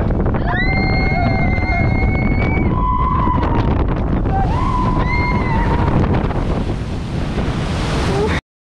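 Rushing wind on the microphone of a water coaster boat, with riders' long yells rising over it: one held yell about half a second in lasting around two seconds, then shorter ones. In the second half, water hisses and sprays as the boat runs into its splashdown.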